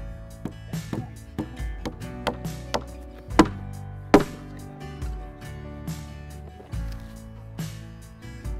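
Hammer blows on a wooden board lying on a concrete-block wall, with two hard strikes about three and a half and four seconds in, over background music.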